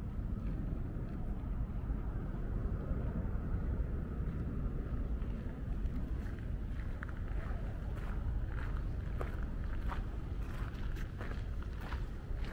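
Low rumble of wind on the microphone in an open garden; from about halfway through, footsteps scuffing and crunching on a gravel path.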